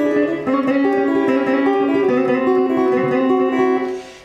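Electric guitar (Stratocaster-style) playing a fast country banjo-roll lick with hybrid picking: the pick and the middle and ring fingers pluck across the strings, so the notes ring into one another. The playing stops just before the end.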